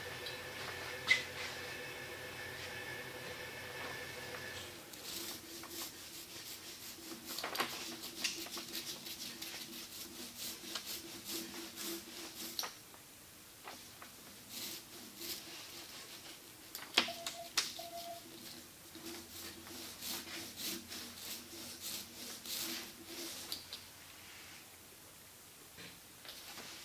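Small hand roller spreading iron-on veneer glue over thin wood veneer: faint rolling and rubbing strokes with rapid light clicks, in two long runs with a short pause between.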